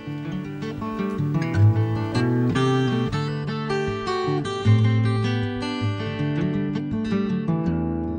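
Background music on acoustic guitar: plucked notes ringing over held bass notes.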